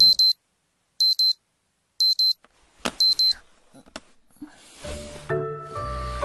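Digital alarm clock beeping: a high double beep once a second, four times, with a sharp click partway through. Soft music with held notes comes in near the end.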